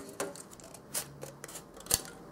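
Scissors snipping through a thin plastic moulded tray, a few separate short snips with the sharpest, loudest click just before the end.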